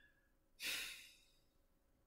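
A single sigh, a short breath out close to the microphone, about half a second in and fading within about half a second.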